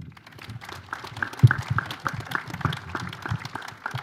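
Audience applauding: a small crowd's many separate hand claps, with a single dull thump about a second and a half in.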